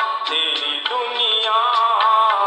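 Music from an old Hindi film song: a wavering melody over accompaniment, sounding thin, with no bass.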